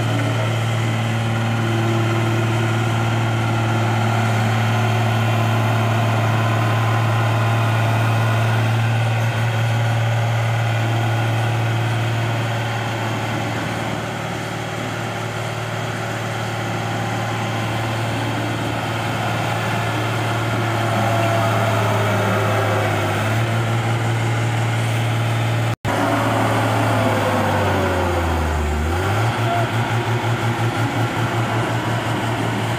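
Heavy diesel engine of a Dynapac single-drum road roller running steadily with a deep hum. Near the end the engine note falls in pitch and turns into a rapid, even throb.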